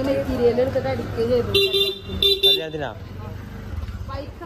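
A vehicle horn beeps twice in quick succession, a little past a second and a half in, each beep short and steady in pitch. Voices of people talking in the street come before it.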